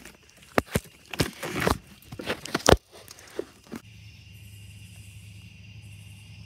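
Irregular metallic clicks, knocks and rustling of hands and a wrench working at a bolt deep in a car's engine bay, the loudest knock a little under three seconds in. This gives way to a faint steady hum.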